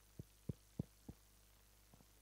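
Four dull low thumps in quick succession, about a third of a second apart, in the first second or so, over a faint steady low hum.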